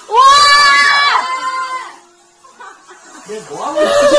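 A loud, high-pitched squeal from a person's voice starts suddenly, holds for about a second with a quick drop in pitch, and fades out by two seconds in; a second, shorter vocal call comes near the end.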